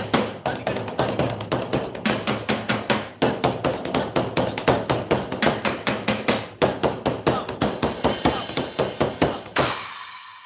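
Fast stick drumming on percussion, a rapid run of sharp strokes several a second. It ends with a final hit that rings and fades away near the end. It is heard through a video call's compressed audio.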